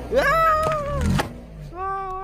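A high-pitched, drawn-out voice-like cry held for about a second, rising at the start and falling away at the end; a second, lower cry begins near the end.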